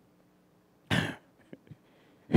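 A man's single short cough about a second in, followed by a few faint ticks.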